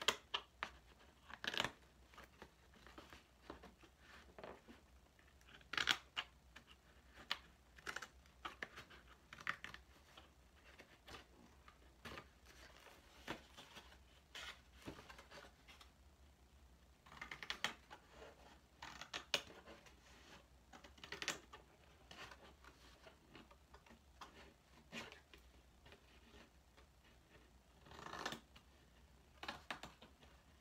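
Thin cardboard cereal box being pulled and torn apart by hand: faint, irregular crackles and short rips, with a few louder tears scattered through.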